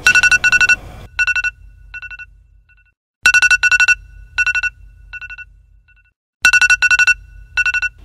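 Phone alarm tone: bursts of rapid high electronic beeps that trail off in fainter repeats, the whole pattern starting over about every three seconds.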